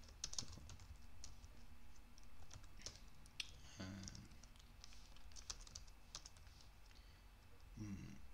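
Faint, uneven keystrokes on a computer keyboard as a line of code is typed slowly, with irregular pauses between clicks.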